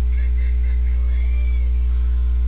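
Steady low electrical hum, mains hum picked up on the recording, with only faint indistinct sounds above it.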